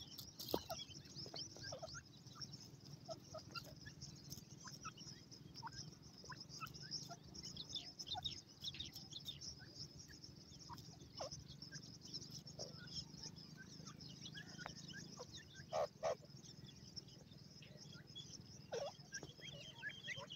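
Grey francolins, an adult with young birds, give soft scattered peeps and clucks while foraging. The calls are short and fall in pitch, with a couple of louder calls about 16 seconds in, over a steady high-pitched drone.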